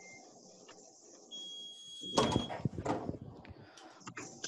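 Hotronix heat press giving a short beep, then being opened and its lower platen slid out on its drawer: a cluster of clunks and a sliding rattle about two seconds in.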